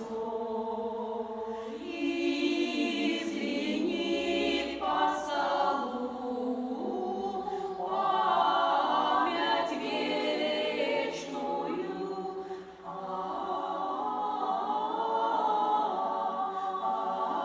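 Women's folk vocal ensemble singing a Russian folk song unaccompanied, several voices in harmony, with a brief breath break between phrases about thirteen seconds in.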